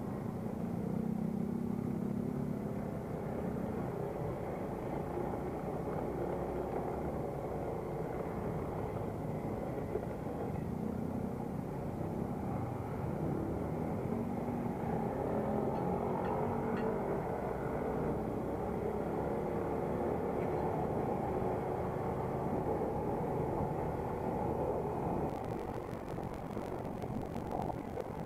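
Motorcycle engine running while riding, its pitch wavering up and down with the throttle, over steady road and wind noise.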